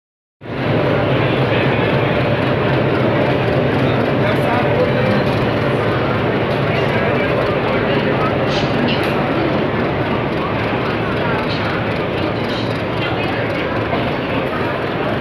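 Meter-gauge YDM-4 diesel-electric locomotive's diesel engine running hard as it hauls a passenger train away from a standstill, a loud steady low drone mixed with the rumble of the train on the rails.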